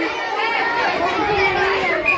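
Chatter of many voices talking at once, with no single clear speaker.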